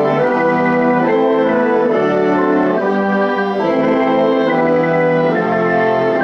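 String orchestra playing slow, sustained chords, the notes shifting every half second to a second.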